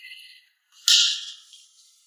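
A single sudden burst of hiss-like noise, high in pitch, about a second in, fading within half a second, after a faint high musical tail at the start: an edited-in sound effect.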